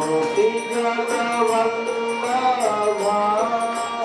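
A man's solo voice chanting devotional prayers as a slow melodic chant into a microphone, the pitch sliding and held on long notes. Light percussion strikes tick along behind it.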